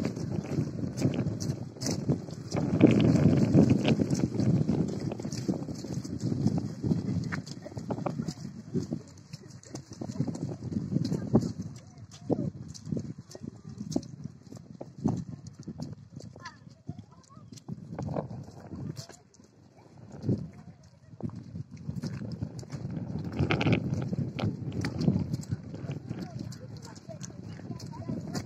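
Footsteps on a wet, muddy dirt road, an irregular run of short clicks and scuffs over rumbling wind on the microphone, with voices in the background.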